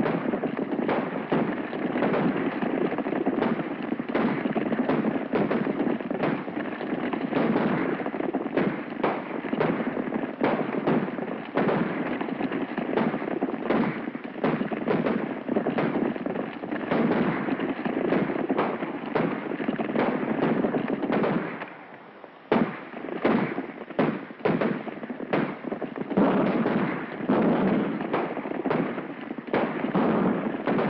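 A group of horses galloping, their hooves making a dense, continuous clatter, with sharp cracks of gunfire among them. The clatter dips briefly about three-quarters of the way through, then picks up again with a sharp crack.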